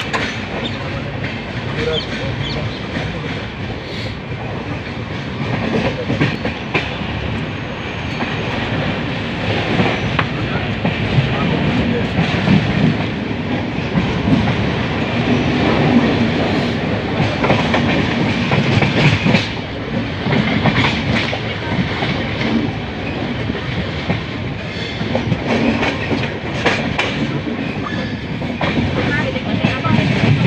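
Long-distance passenger train running, heard from the side of a moving coach: a steady rolling rumble with irregular clickety-clack of wheels over rail joints and crossings.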